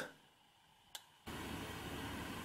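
Dead silence broken by one faint short click about a second in, then a steady low hiss of room tone starting up: the background noise of the recording after an edit.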